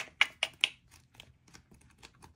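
Pages of a sticker book being flipped by hand: four quick, sharp paper flicks in the first moment, then only faint ticks.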